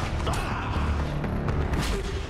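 Science-fiction TV soundtrack: mechanical creaking and clanking effects with a few sharp knocks over a heavy low rumble.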